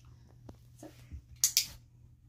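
Dog-training clicker pressed and released: two sharp clicks in quick succession about one and a half seconds in, marking the dog's trick as the behaviour about to be rewarded with a treat.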